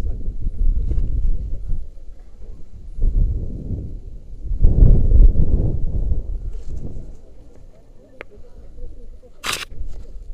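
Wind rushing over the microphone of a body-worn action camera as the rope jumper swings on the rope, swelling and fading in three waves. A short sharp noise near the end.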